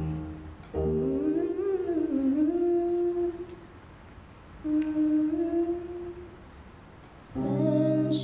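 A solo female voice humming a wordless melody over a digital keyboard: a rising, bending phrase settling into a held note, a pause, then a second held note. Sparse keyboard chords underneath, with a fuller chord and the voice coming back in near the end.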